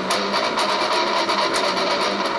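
Eastwood Sidejack electric guitar played through a BOSS MT-2 Metal Zone distortion pedal into a Vox AC15 valve combo amp: a stream of quick picked notes with heavy distortion.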